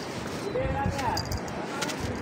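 Cloudburst flash flood of muddy water and loose rocks rushing steadily over debris, with a few dull thumps about half a second to a second and a half in.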